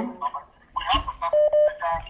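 Telephone call-in line sounds: a faint voice coming through the phone line and two short electronic beeps in quick succession, a little past halfway, while the call is being connected.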